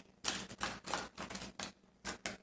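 Tarot deck being shuffled by hand: a quick run of short card snaps and slaps, about four or five a second.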